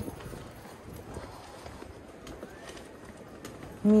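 Footsteps of high-heeled shoes on a paved sidewalk at a walking pace, a run of faint irregular clicks over a low background hum of the street.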